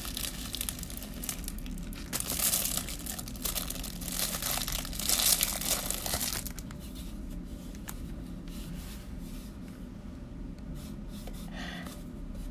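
Plastic bubble-wrap packaging crinkling and tearing as a mailer is unwrapped by hand. It is loudest in the first half, then turns to quieter rustling with a few small clicks.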